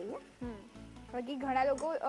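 Onion, capsicum and tomato masala frying in a pan on a gas hob, with a soft sizzle, under background music carrying a wavering melody that is loudest in the second half.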